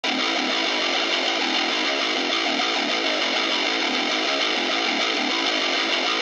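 Opening of a trap metal instrumental beat: a distorted electric guitar playing a quick riff of short notes, with no bass or drums underneath.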